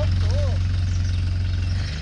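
Engine of an old Mitsubishi pickup truck running with a steady low drone as it drives away, dropping off a little near the end.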